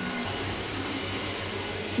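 Roborock S5 Max robot vacuum running steadily, its suction motor giving a constant whir as it vacuums and wet-mops the floor at the same time.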